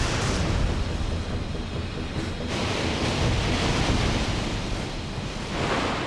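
Waves and sea spray breaking over a warship: a continuous rushing hiss over a low rumble, turning brighter and hissier about two and a half seconds in.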